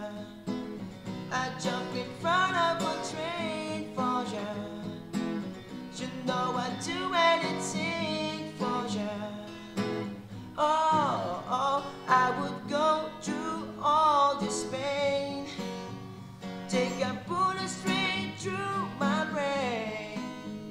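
Acoustic guitar strummed as accompaniment to a man singing, his voice carried in long, bending sung lines.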